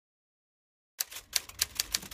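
Typewriter keys being struck in quick succession, beginning about halfway in after a second of silence.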